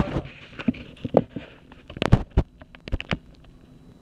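Someone chewing chocolate close to the microphone: irregular wet clicks and smacks of the mouth, about a dozen, with no steady rhythm.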